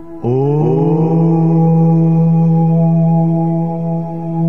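A voice chanting one long, held 'Om' that begins suddenly about a quarter second in, sliding up in pitch before settling on a steady note, over a steady drone of meditative background music.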